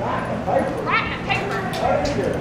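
Background voices, with a few short, high yips from an animal.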